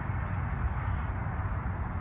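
Steady low rumble of outdoor background noise with no distinct event in it.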